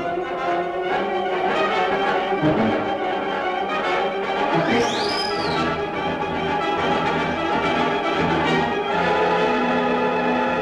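Orchestral film score with brass, playing at a steady level. A brief high tone rises and falls about five seconds in.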